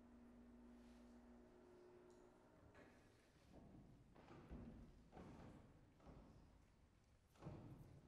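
Near silence: a faint steady hum, then from about three seconds in five soft thumps and shuffles, the last the loudest, as two people settle onto the bench and chair at a grand piano.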